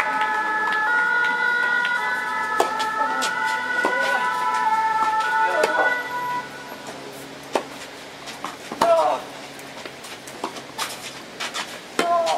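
A siren of steady tones stepping between pitches sounds through the first half and cuts off about halfway. Sharp tennis-ball strikes off rackets on a clay court, one about two and a half seconds in and several near the end, are heard with short vocal calls.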